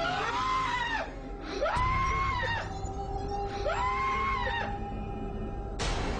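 A man screaming in terror: three long, high screams about a second each, over a steady, tense music drone. A sharp hit sounds near the end.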